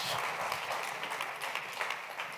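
Congregation applauding, the clapping slowly thinning out toward the end.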